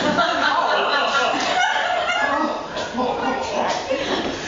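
A small audience laughing, several voices overlapping for a few seconds.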